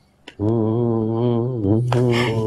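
Background score: a low, male-range voice singing one long, slightly wavering note in a slow, chant-like style, after a brief pause near the start.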